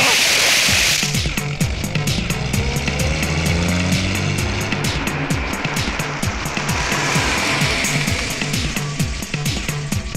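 Film background score: a fast, driving percussion beat over a low bass line, opening with a loud crash.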